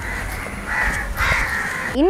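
Crows cawing: a few harsh caws in quick succession, strongest in the second half.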